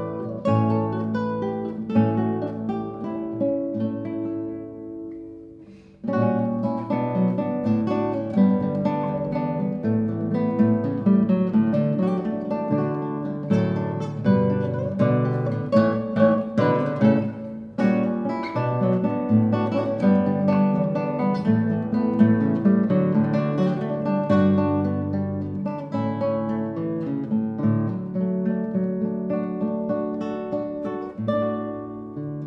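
Two classical guitars playing a duet with plucked notes. The sound dies away over the first few seconds, then both guitars come back in strongly at about six seconds and carry on with busy, steady plucked passages.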